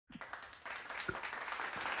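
Applause: a few separate claps at first, filling out into steady clapping of many hands within the first second.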